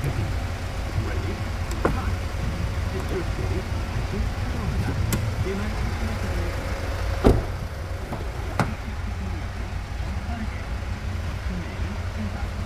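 A car's doors and switches being handled, with a few sharp clicks and one louder thump of a door about seven seconds in, over a steady low hum.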